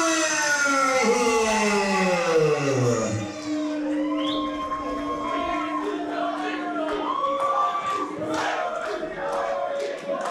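A ring announcer's long drawn-out call, falling in pitch over about three seconds, then more long held notes, over crowd noise in a hall.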